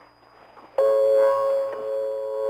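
Faint shortwave static, then about three-quarters of a second in a sustained chime-like electronic keyboard chord starts suddenly: the start of a slow melody heard over a shortwave broadcast, the station's interval signal between programmes.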